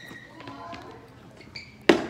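A single sharp knock just before the end, with faint voices in the background and a brief high squeak shortly before the knock.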